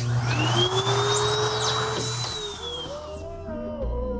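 Rubber screen-printing squeegee dragged through ink across the mesh of a screen: a scraping hiss with a squeal that rises, holds and falls away over about two and a half seconds. Music comes in near the end.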